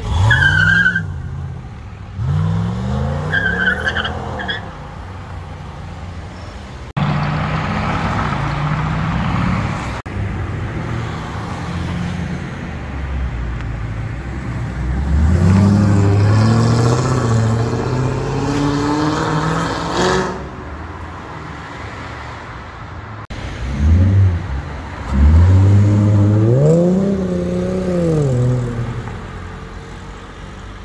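Several cars accelerating hard one after another, each engine revving up in rising pitch and then easing off. There is a brief tyre squeal during the first few seconds.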